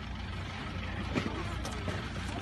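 Steady low rumble of vehicles, with faint voices in the background.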